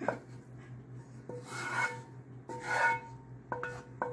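A spatula scraping browned ground beef out of a nonstick frying pan: two rasping scrapes, about a second and a half in and again near three seconds, with sharp taps against the pan that leave it ringing briefly.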